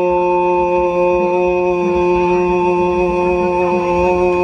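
A male Korat folk singer holds one long, steady sung note into a microphone, heard through a PA. The pitch bends slightly as the note ends near the close.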